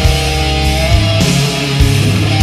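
Heavy metal band recording playing an instrumental passage with no vocals: distorted electric guitars over bass and drums, with sustained notes held through the first half.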